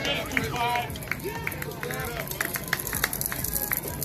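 Spectators cheering and shouting, several voices at once, with scattered hand claps.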